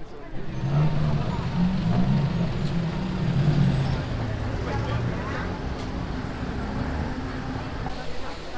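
Road traffic close by: motor vehicle engines running with a deep, steady hum that comes in just after the start, loudest in the first half and easing off later, with voices in the background.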